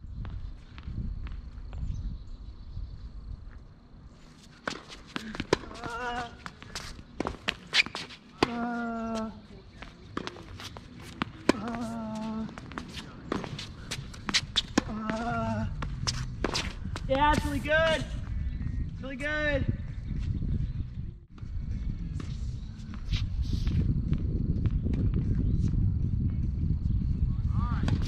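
Hard-court tennis rally: repeated sharp pops of racket strings hitting the ball, and players' footsteps on the court. Several short pitched sounds come between about six and twenty seconds in, and a louder low rumble builds over the last few seconds.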